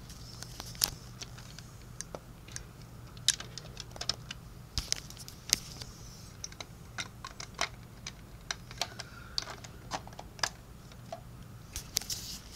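Irregular light plastic clicks and taps as a built Lego model is handled up close, over a faint steady low hum.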